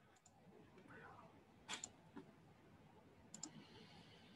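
Near silence: room tone with a few faint, sharp clicks, some coming in quick pairs.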